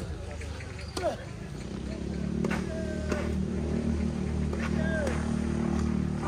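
Tennis racket strikes on the ball, a second serve about a second in followed by several rally hits, over a steady low engine hum from a vehicle that comes in about two seconds in and builds to the end.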